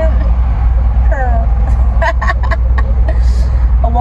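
Steady deep rumble of a car's engine and road noise heard from inside the moving cabin, with a woman's brief vocal sounds and a laugh at the end.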